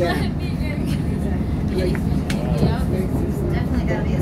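Steady low rumble inside a CTA 'L' rail car, with people's voices talking indistinctly over it.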